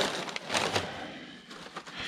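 Rustling and crinkling of packing paper and clear plastic wrap being handled and pulled out of a cardboard box, with a few small clicks, loudest about the first second.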